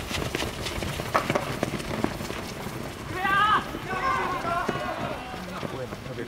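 Quick footfalls of a group of people running on a dirt field. From about three seconds in, several voices shout over the footsteps.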